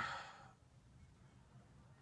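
A man's breath trailing off the end of a spoken word and fading out within half a second, then near silence: room tone.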